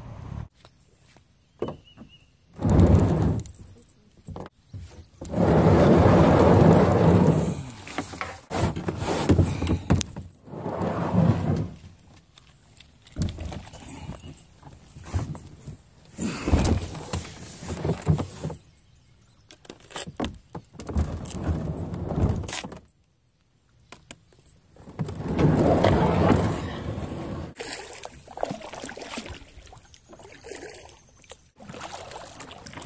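Handling noise from a camera carried by hand: cloth rustling against the microphone, knocks and rattles, in loud irregular bursts with short quiet gaps.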